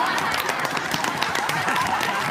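A group of people laughing and shouting over one another in an excited uproar, with clapping mixed in.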